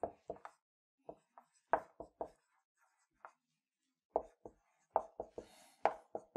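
Felt-tip marker writing on a whiteboard: an irregular run of short squeaky strokes and taps as the letters go down.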